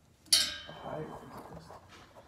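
A metal part is struck once, a sharp clank about a third of a second in that rings briefly, followed by quieter metallic handling and rattling.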